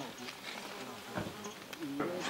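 Outdoor ambience of buzzing insects, a fairly quiet steady hiss-like drone.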